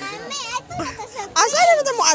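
Speech only: people talking and calling out in high-pitched voices, a child's voice among them.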